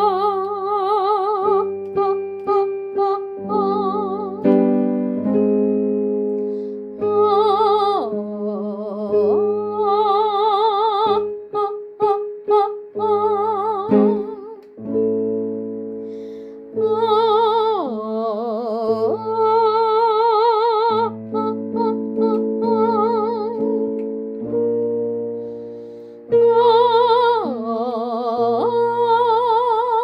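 A female voice sings a sustained "oh" vowel with vibrato over piano chords, as a vocal warm-up exercise. It follows a scale-degree pattern of 8-1-8 then four repeated 8s, swooping down and back up about every ten seconds.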